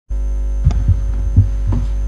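Loud, steady electrical mains hum picked up in the microphone feed, with a buzzy ladder of overtones. It is broken by a few soft low knocks from handling at the desk.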